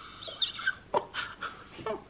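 A woman laughing quietly in breathy, suppressed giggles, with a short "oh" in the middle.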